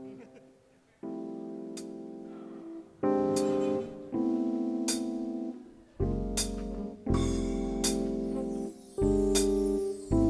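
Electric stage keyboard, a Nord Stage 2, playing a slow sequence of held chords, a new chord struck every second or two after a brief silence; from about six seconds in a low bass sounds under each chord.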